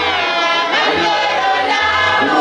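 A congregation choir singing together, many voices at once in a steady chorus.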